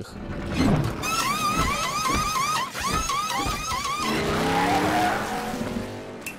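Car-racing sound effects from an animated film clip: a rush of noise, then a wavering squeal repeating about three to four times a second for some three seconds, then a falling tone.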